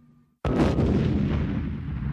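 Artillery fire: after a short silence, a single cannon blast goes off about half a second in, followed by a long low rumble that slowly fades.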